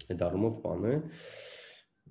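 A man's voice speaking, with a short breathy rush of air about a second in.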